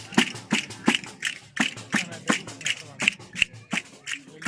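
Tammorra frame drum and the dancers' castanets beating out a steady tammurriata rhythm, about three strokes a second, each a low thump with a bright rattle of jingles and clicks on top.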